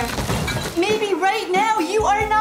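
A short crash, like something breaking, at the start, then a person's voice rising and falling over held music tones.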